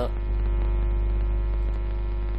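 Steady electrical mains hum on the recording: a low drone with a faint steady higher tone over it.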